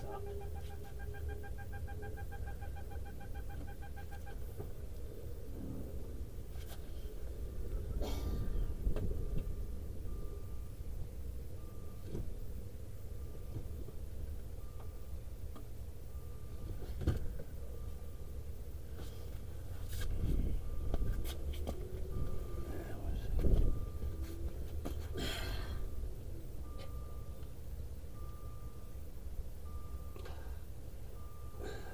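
A car's dashboard warning chime with the ignition switched on. A steady tone sounds for the first few seconds, and from about a third of the way in a short beep repeats about every one and a half seconds. Scattered knocks and bumps sound in between.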